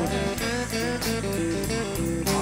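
Worship band playing a short instrumental passage between sung lines: an electric guitar picks a stepping melody over bass and drums.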